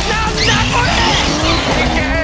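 Drift car's engine revving in rising sweeps with tyre squeal, mixed with background music.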